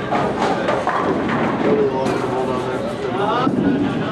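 Bowling alley ambience: overlapping background voices with scattered knocks.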